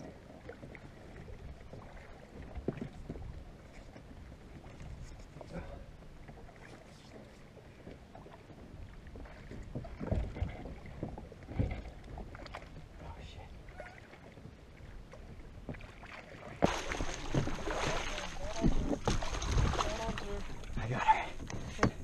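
Quiet water sounds with small knocks on a kayak hull. About three-quarters of the way in, a louder rushing wash of water and wind starts as a hooked tarpon is grabbed by the jaw beside the kayak.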